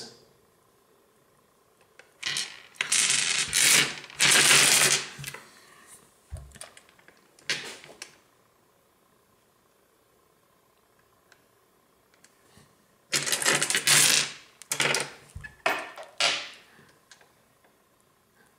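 Polished tumbled stones clicking and clattering against one another as hands sift through a pile of them, in two spells with a quiet pause between.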